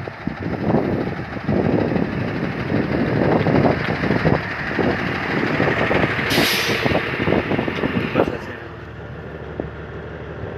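Knocking, scuffing and rubbing of a hand-held phone being jostled while someone climbs up into the cab of a Tata Signa 5530.S truck. A short burst of air hissing comes about six and a half seconds in, and the noise drops away a couple of seconds later.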